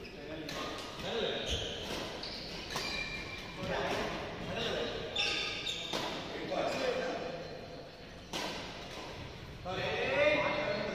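Voices talking in a large, echoing sports hall, with a few sharp knocks scattered through.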